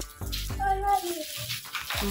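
Shiny gift-wrapping paper crinkling and tearing as a present is unwrapped, with a child's voice.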